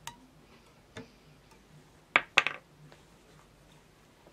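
A few small, sharp clicks and taps of hard objects being handled at a fly-tying bench: a light one at the start, another about a second in, then two louder ones in quick succession just after two seconds.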